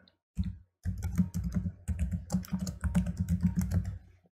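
Computer keyboard typing: a few keystrokes, a short pause, then a quick, even run of keystrokes as a password is entered.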